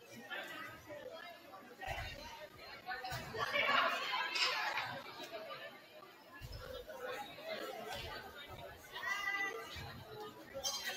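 Indistinct chatter of several people talking at once, echoing in a gymnasium, loudest about four seconds in.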